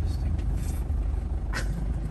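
Steady low rumble of a van's engine and road noise, heard from inside the cab as it drives slowly. A short laugh comes about one and a half seconds in.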